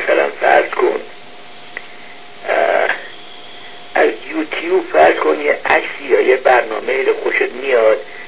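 Speech in stretches with short pauses, sounding thin and radio-like as over a telephone line, with a faint steady tone audible in the pauses.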